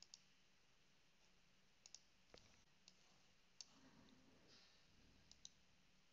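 Faint computer mouse clicks over near-silent room tone: scattered single clicks and quick double-clicks while navigating on screen.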